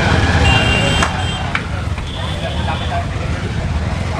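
Busy street-stall noise: a steady low rumble with voices in the background, over bhature deep-frying in a large iron kadhai of hot oil, and two sharp metal clicks about a second and a second and a half in.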